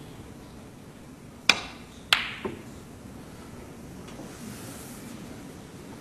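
Snooker shot: the cue tip strikes the cue ball with screw (low on the ball) about one and a half seconds in. Just over half a second later comes a sharper clack as the cue ball hits an object ball, then a lighter knock.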